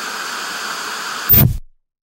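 Steady TV static hiss, a lost-signal sound effect. About 1.3 s in, a short loud low burst ends it, and the sound cuts off suddenly.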